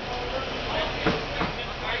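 A heavy truck's engine running steadily in the background, with faint distant voices.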